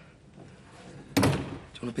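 A door shutting with a single loud thud about a second in.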